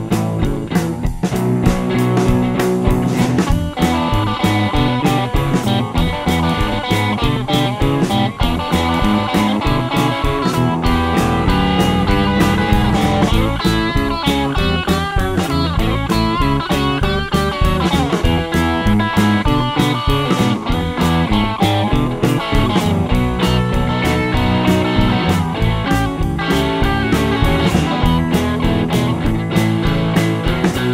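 Blues/rockabilly band playing an instrumental stretch with a steady beat, electric guitar out front; the guitar's notes bend and waver about halfway through.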